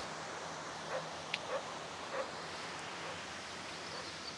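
Quiet open-air ambience: a steady even hiss with a faint low hum under it, and a few faint, brief distant sounds between about one and two seconds in.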